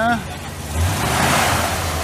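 A 1970 Chrysler 300's 440 V8 running. Its low rumble swells about a second in, together with a short rush of hiss as the engine picks up briefly.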